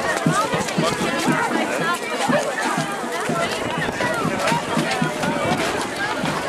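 Crowd of adults and children chattering as they walk, many voices overlapping with no single speaker standing out.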